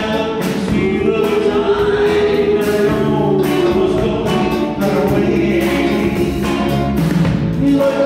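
Live vocal-group performance: a male lead sings into a microphone, with group harmony voices and a backing band with a steady drum beat.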